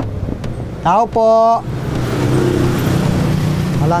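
A motor vehicle's engine and tyres passing close by on the road, coming in about halfway through as a steady low engine hum under a loud rush of noise.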